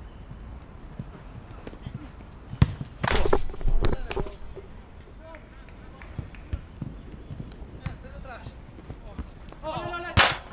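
Pickup football game: a sharp knock of the ball being kicked, then players shouting loudly for about a second, followed by scattered lighter ball knocks and faint calls.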